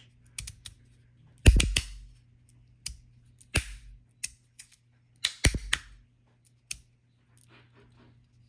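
Metal magnetic fidget slider, with strong N52 magnets, being slid and snapped: sharp metal clacks at irregular intervals, with two loud clusters of quick snaps, about a second and a half in and about five and a half seconds in.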